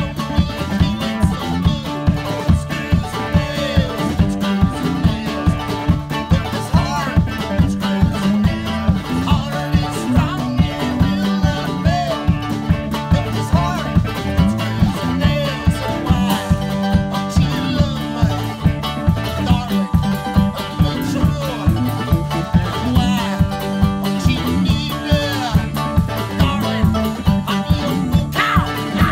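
Live twangy country-rock band playing: a drum kit keeps a steady beat of about two hits a second under electric guitar, bass guitar and a strummed round-bodied stringed instrument, with a man singing lead.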